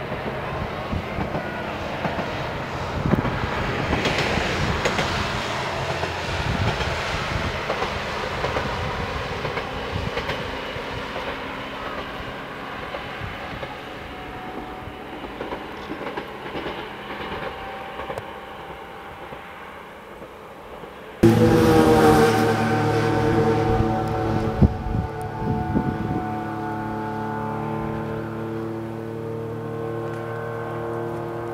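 Asa Kaigan Railway diesel railcar running. First comes a broad rumbling noise as it travels along the valley line, loudest early and fading away. Then, after a sudden jump about two-thirds of the way in, its engine drone with several steady held tones and a few clicks as it comes along a concrete viaduct.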